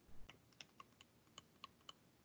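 About nine faint, irregular clicks of a stylus pen tapping on a tablet screen during handwriting.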